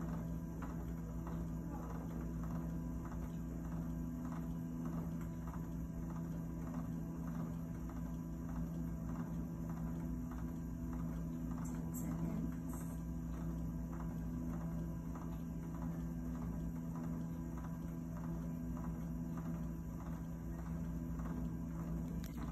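Home hemodialysis equipment running: a steady machine hum with a soft, regular ticking about twice a second.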